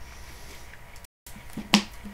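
A single sharp click or snap near the end, over faint room noise; the sound cuts out completely for a moment shortly before it.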